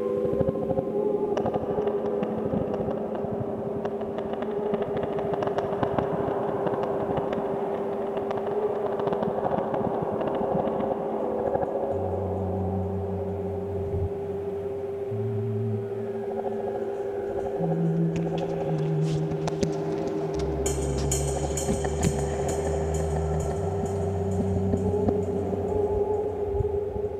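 Live electronic music from synthesizers and an MPC sampler: a steady held synth drone over a hazy texture. About halfway through, a low synth bass line joins, stepping between notes, and a bright crackling, hissing layer comes in towards the end.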